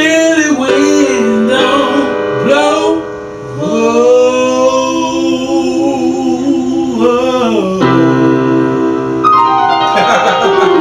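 Gospel singing over keyboard accompaniment: a voice draws out long notes with vibrato and short runs, holding one note for about four seconds in the middle, over sustained piano chords.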